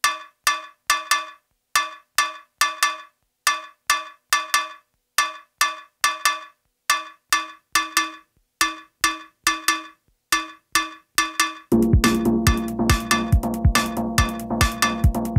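Home-made electronic techno track: a sparse, repeating pattern of short, pitched cowbell-like hits with silence between them, about three a second. About twelve seconds in, a kick drum and a held low synth chord come in and the beat fills out.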